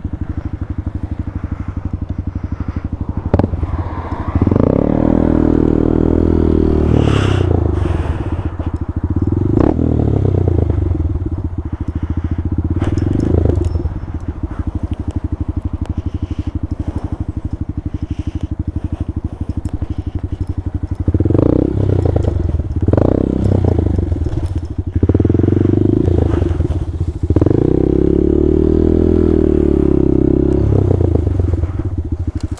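Honda Grom (MSX125) air-cooled 125cc single-cylinder four-stroke engine being ridden over a rough dirt track. It revs up and drops back again and again as the throttle is worked, with occasional knocks and clatter from the bike over the bumps.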